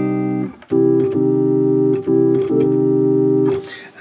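Electronic keyboard with an organ-like tone holding a C minor chord, struck a few times with short breaks between; the held notes stay level rather than fading away.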